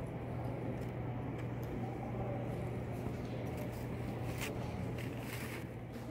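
Steady low hum of indoor room noise, with a few faint clicks, such as a phone being handled.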